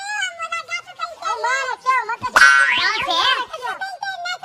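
High-pitched, excited voices squealing and exclaiming without clear words, in quick short rising-and-falling cries. A loud rising shriek comes about halfway through.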